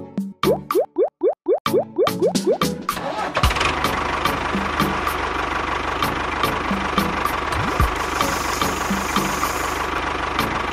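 Background music with a steady beat: a run of short rising sweeps in the first three seconds, then from about three and a half seconds in an engine running steadily at idle under the music.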